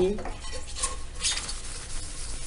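A few light clinks and rustles of a metal pot being picked up and handled at a kitchen sink.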